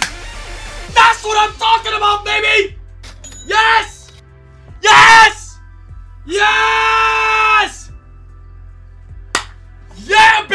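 A man screaming and yelling in wild excitement: a run of short shouts, a loud yell about five seconds in, then one long held scream, over steady background music. A single sharp knock near the end.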